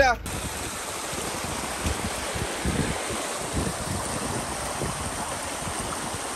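Small jungle stream cascading over rocks, a steady rush of water that starts abruptly about a quarter second in.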